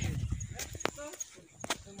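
Short, quiet fragments of a man's voice between words, with a low rumble and two sharp clicks, typical of a phone held in the hand while walking.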